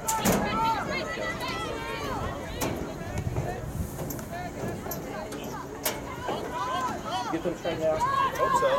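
Several voices shouting and calling out during soccer play, overlapping one another. Three sharp knocks come a few seconds apart, the first and loudest right at the start.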